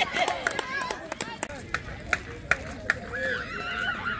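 Several people at a baseball game talking and calling out, not close to the microphone. Through the middle there is a run of sharp clicks, roughly two or three a second.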